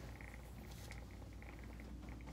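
Quiet room tone: a faint steady low hum with a soft, irregular fluttering above it.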